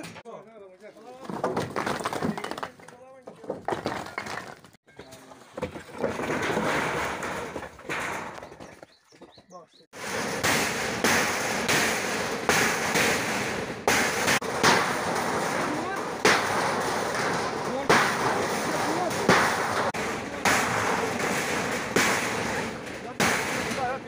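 Manual demolition of corrugated metal sheet fencing: repeated blows of a hammer or iron bar on the sheets, sharp metal bangs and rattling, dense and steady from about ten seconds in, with a few scattered knocks before. Men's voices run through it.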